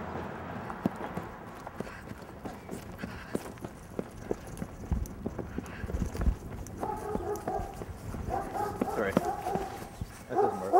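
Quick running footfalls on dry grass and hard ground, about two to three a second, with a few heavy thumps of a jolted handheld camera around the middle. From about seven seconds in, a voice calls out without clear words over the running.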